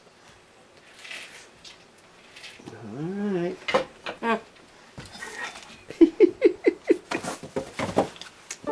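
A woman's wordless sounds of disgust while tasting food: a drawn-out vocal sound about three seconds in, then a quick run of short voiced pulses and a breathy burst into a tissue near the end.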